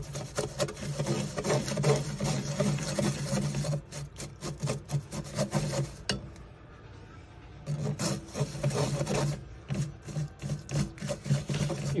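A toothbrush scrubbing wet clumps of xanthan gum paste against a stainless steel mesh strainer, quick rasping strokes that work undissolved gum through the mesh. The scrubbing pauses for a second or two just past the middle, then resumes.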